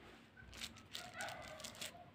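Faint crinkles and light clicks of a plastic bag of frozen minced garlic pressed with the back of a knife. A faint short tone comes in the second half.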